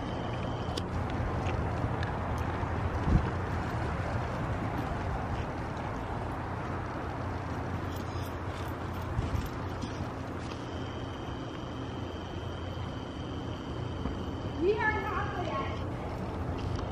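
Horses trotting on the soft sand footing of an indoor arena: muffled hoof thuds over a steady low rumble. A short voice rises and falls near the end.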